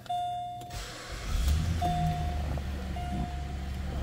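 A 2009 Pontiac G6 GXP's 3.6-litre V6 starts about a second and a half in and settles into a steady idle. The car's dashboard chime beeps four times at one pitch, about a second apart.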